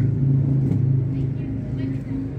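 A steady low motor hum, unchanging throughout, with faint voices in the background.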